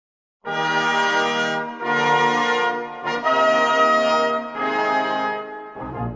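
Brass music playing a slow phrase of long held chords, about four of them with a brief note between the second and third, starting half a second in after silence.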